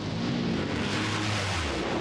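Top Fuel dragster engines, supercharged nitromethane V8s, running hard down the drag strip as heard over broadcast audio: a dense blare with a low steady note that drops in pitch near the end.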